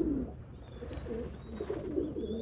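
Domestic pigeons cooing, with a few short high chirps over them.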